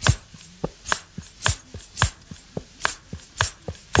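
Percussion-only break in a Tamil film song: hand-drum strokes in a steady rhythm, about two strong strokes a second with lighter ones between, several with a low note that falls in pitch.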